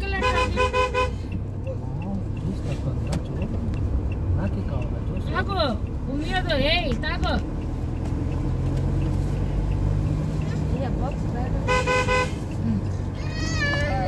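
Car driving, heard from inside the cabin as a steady low rumble of engine and road. A horn sounds in quick short toots for about the first second, and again in one short honk about twelve seconds in.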